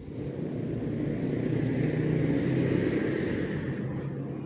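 Commuter train running along the tracks just out of view: a steady low rumble with a hiss that swells to its loudest about two to three seconds in and then eases.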